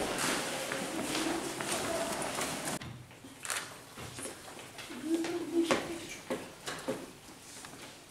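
Children's footsteps and low murmuring voices as a group files in. About three seconds in this gives way to a quieter room with scattered knocks and one short voice.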